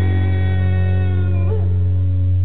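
Live band holding a closing chord: a steady deep bass note under sustained ringing guitar and keyboard tones, with a brief sliding pitch about one and a half seconds in.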